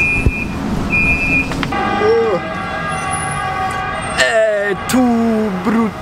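Two short, high electronic beeps from a tram, its door warning signal, followed by a steady whine of several tones from the tram's drive. A voice speaks near the end.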